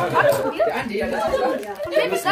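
Several voices talking over one another in indistinct chatter.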